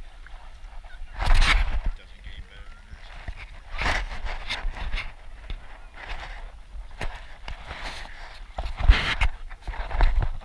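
Shallow seawater sloshing and splashing against a camera held at the water's surface, in irregular bursts (the loudest just over a second in and another near the end), over a low wind rumble on the microphone.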